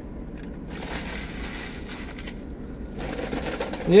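Paper food wrapper crinkling as it is handled, for about two seconds, then a softer rustle near the end, over a low steady hum.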